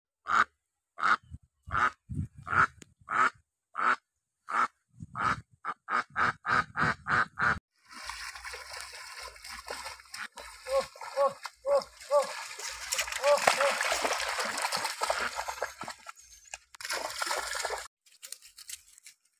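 Domestic duck quacking in a run of single calls, about one and a half a second, quickening to about three a second near eight seconds in. After that, water splashing and sloshing as people wade through a shallow stream, with a few short pitched calls.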